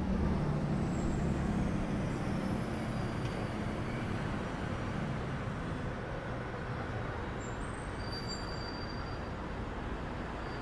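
City street traffic: cars and a box truck driving past, their engine rumble strongest in the first few seconds and then easing. A faint high-pitched squeal comes in briefly near the end.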